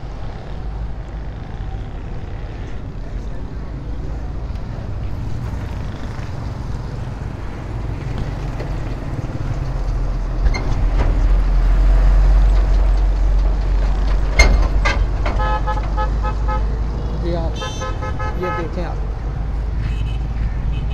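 Low, steady rumble of road traffic and engines, growing louder around the middle, then a vehicle horn sounding twice in long held blasts near the end.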